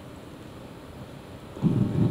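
Quiet room tone, then about one and a half seconds in a brief low rumbling noise.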